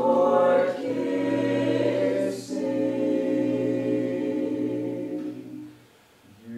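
Mixed-voice a cappella jazz choir singing sustained close-harmony chords over a held low bass note, changing chord about a second in and again midway. The chord fades away near the end.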